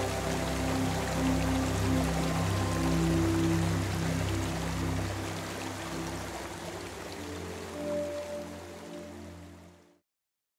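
Slow background music of held, slowly changing chords over the steady hiss of running water, fading out over the last few seconds.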